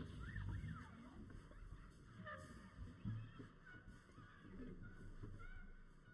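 Jazz band playing softly, with brass horns (trombone and trumpets) carrying a faint, sliding melodic line over the rhythm section.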